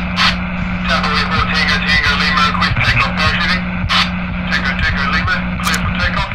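Radio-transmission sound effect: loud static and garbled, indistinct voice chatter over a steady hum that keeps breaking off, with frequent crackling clicks.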